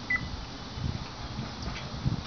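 A single short, high, beep-like bird chirp just after the start, over low rumbling noise.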